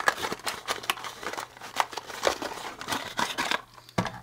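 Small cardboard box being handled and opened by hand: a run of light clicks, taps and rustles of card, dying away shortly before the end.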